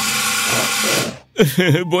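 Cartoon sound effect of a fire extinguisher spraying: a steady hiss that cuts off suddenly about a second in.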